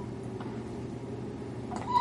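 A baby's short squealing coo near the end, rising in pitch, over a steady low hum.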